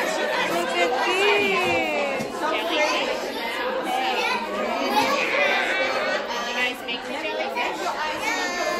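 Classroom chatter: many children's and adults' voices talking over one another at once, with no single speaker standing out.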